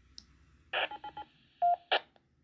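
Baofeng UV-9R Plus handheld radio sounding through its speaker: a burst of hiss with four quick tone pulses, then a single short beep, then another brief burst of hiss near the end.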